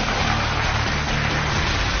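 Audience applause, a dense steady clapping, over background music.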